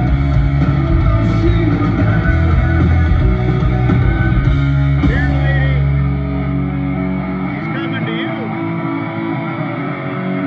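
Rock band playing live through a concert PA, heard from among the audience: electric guitars over heavy bass and drums. About eight seconds in the deep bass drops out, leaving the guitars.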